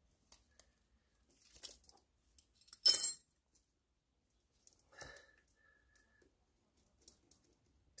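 Steel open-end wrenches set down on concrete paving stones with a short metallic clatter about three seconds in, among light clicks and rustles of hand work on a plate compactor's rubber paving mat. A brief faint squeak follows near five seconds.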